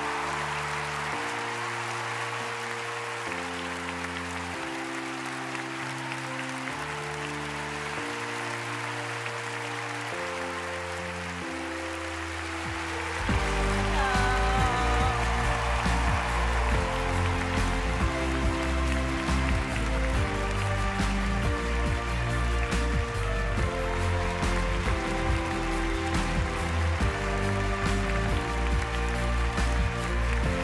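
Applause over background music. The music holds sustained chords at first, then about halfway through grows louder with a heavy bass pattern. A short whoop rises over the clapping just after the music swells.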